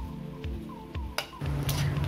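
Metal spatula scraping and clicking against an aluminium wok while water spinach (kangkong) leaves are stir-fried, with light sizzling, over soft background music.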